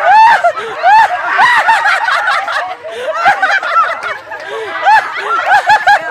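High-pitched laughter from several people, short peals overlapping one after another.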